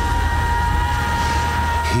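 Deep, steady storm-and-wind rumble from film sound design, with one high note held throughout.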